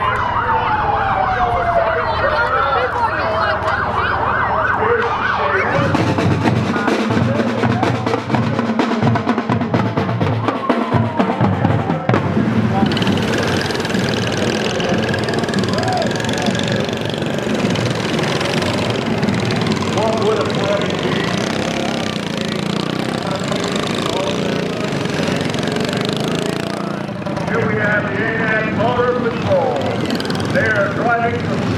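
A siren winding down in pitch at the start. From about halfway on, a pack of small-engine parade go-karts drive past, their engines making a dense, uneven buzz.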